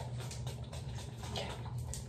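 Small perfume bottle's spray pump pressed over and over, a quick series of faint clicks and puffs: the nozzle is stuck and not spraying. A steady low hum runs underneath.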